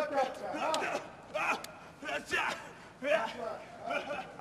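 Men's voices shouting and yelling in short bursts, with no clear words.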